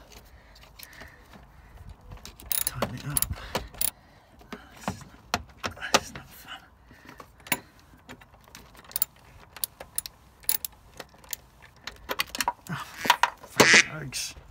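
Irregular metallic clicks and clinks of a socket wrench and extension working on the wiper motor mounting bolts, with a busier, louder burst of clatter near the end.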